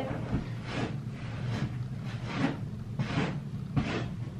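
Bedding rustling as a duvet-covered comforter is tucked in along the side of a mattress: a series of soft fabric swishes.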